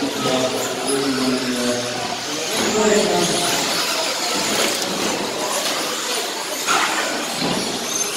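Radio-controlled electric short course cars racing on an indoor track, their motors whining as they speed up and slow down, with a voice talking over it and a sharp knock about seven seconds in.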